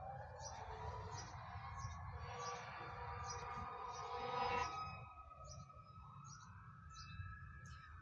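Faint emergency-vehicle siren wailing, its pitch slowly rising and falling.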